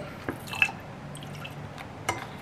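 A squeezable plastic lime-juice bottle being squeezed over a glass: a few soft squishes and drips, the clearest about half a second in, over a faint steady low hum.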